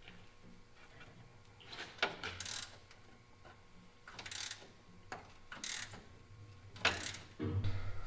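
Hand ratchet wrench clicking in short runs as a rusty truck bed-mount bolt is backed out, about five brief bursts of ratcheting a second or so apart.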